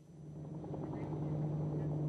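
Helicopter engine and rotor running, a steady low hum that fades in over the first half-second.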